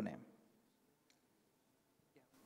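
Near silence: a man's last spoken word trails off, then room tone with one faint click about a second in.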